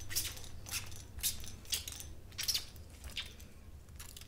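Small glass hand-pump plant mister spraying water onto the leaves of a potted plant: a series of short hissing squirts, about two a second with brief pauses between.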